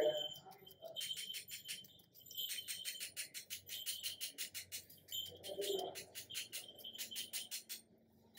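A spoon working powdered sugar through a small metal mesh strainer: a rapid run of light metallic clicks, several a second, with a couple of short pauses.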